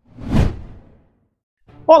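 A whoosh sound effect marking an edit transition, swelling quickly and fading away within about a second.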